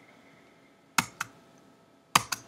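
Two sharp clicks of computer keyboard keys about a second in, a quick pair a fifth of a second apart, as the presentation slide is advanced.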